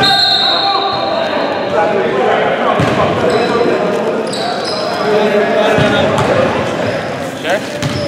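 Basketball game in an echoing gym: a ball bouncing on the hardwood floor, sneakers squeaking in short high bursts, and players' and onlookers' voices.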